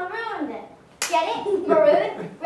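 Children's voices speaking stage dialogue, broken about a second in by a single sharp hand clap.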